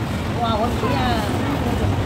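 Women's voices chatting at a table over a steady low rumble of wind buffeting the microphone, with a few short spoken phrases in the first half.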